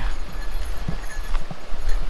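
Wind buffeting the microphone with a heavy low rumble, over the rush of a nearby river and waterfall, with a few soft footsteps on a dirt trail.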